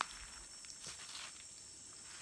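A few soft footsteps on dry leaf litter about a second in, over a steady high-pitched chorus of insects.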